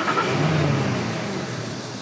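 Car engine running and revving as the car pulls away.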